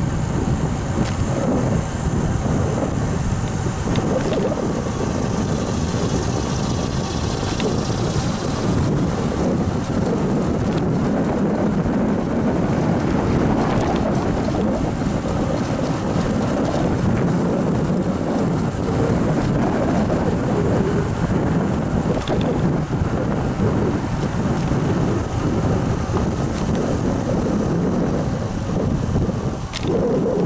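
Steady wind rumble on the microphone of a camera carried on a moving bicycle, mixed with tyre and road noise.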